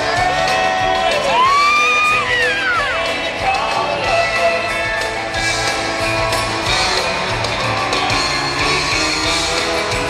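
Live country band playing in an arena, with a loud whooping yell that rises and falls over the first few seconds and a crowd cheering.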